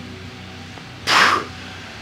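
A man's short, forceful breath through the mouth about a second in, a brief hiss, taken as he demonstrates bracing for a squat.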